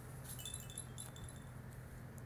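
Small chimes tinkling: a quick run of short, high, clear notes that dies away after about a second and a half, over a faint steady low hum.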